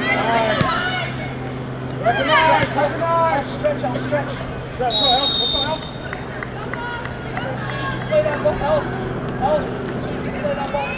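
Shouting voices of players and coaches calling out across a soccer pitch in short bursts, over a steady low hum, with a brief high steady tone about five seconds in.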